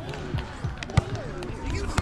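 A volleyball hit by hand: one sharp smack about halfway through, with faint players' voices around it.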